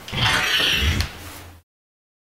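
A loud, breathy snarling hiss lasting about a second as a man playing a vampire lunges to bite a neck. It cuts off abruptly into silence.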